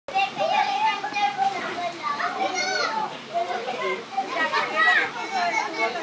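Several young children shouting and chattering in high voices while they play.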